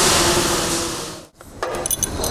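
A steady hiss with a faint held tone cuts off suddenly a little over a second in. It is followed by light metallic clinks of a hanging steel chain being handled while a hose is tied to it.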